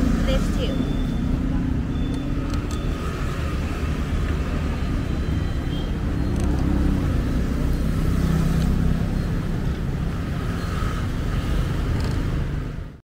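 Street noise dominated by a steady low rumble of motor vehicles.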